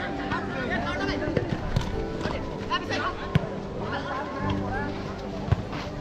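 Distant shouts and calls of players and onlookers at an outdoor football match, over steady background music. A few sharp thuds, the ball being kicked, come through about a second and a half, three and a half, and five and a half seconds in.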